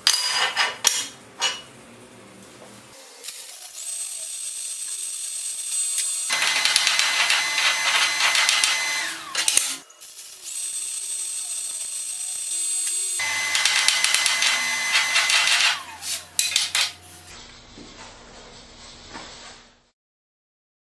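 A few sharp metal knocks from a homemade chipping hammer striking a steel plate. Then a stick-welding arc crackles on steel angle in two runs, split by a short break about halfway, with a few more knocks after the second run.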